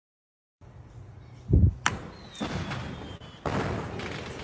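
A heavy thud about one and a half seconds in, then a single sharp crack, followed by a faint falling whistle and a steady noisy rush toward the end.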